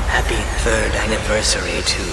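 Khmer electronic dance remix: a pitched vocal sample over a steady deep bass, with a falling sweep effect high up in the first second.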